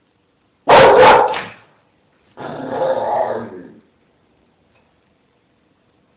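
A young bull terrier vocalising twice: a loud, sharp bark-like sound about a second in, then a longer grumbling 'talking' sound lasting about a second and a half.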